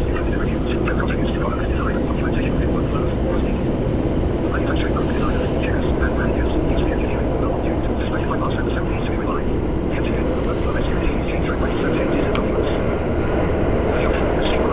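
Subway train heard from inside the passenger car, running with a steady low rumble as it pulls out of an underground station, with scattered short higher-pitched sounds over it.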